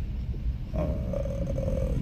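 A man's drawn-out hesitation "uh", held for about a second, over a steady low rumble.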